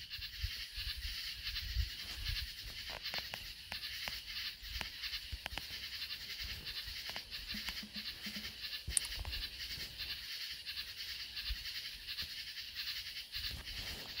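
A nature-sounds background track: a steady high-pitched chorus with animal sounds and scattered faint low knocks.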